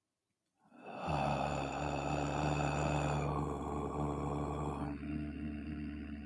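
A man chanting a long, low "Om" held on one steady pitch, starting about a second in. Near the end the open vowel closes into a hummed "mm".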